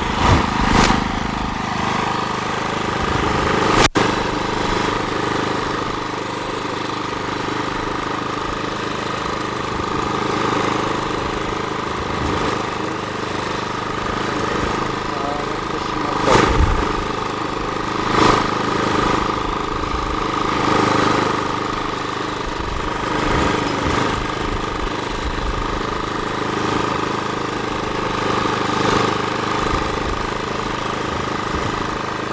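Small petrol engine of a walk-behind tiller running steadily under load while tilling soil, with a few brief louder swells.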